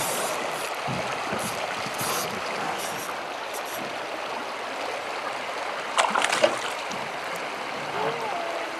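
River current rushing steadily over rocky riffles, with a short burst of sharper splash-like sounds about six seconds in as a hooked panfish is brought in.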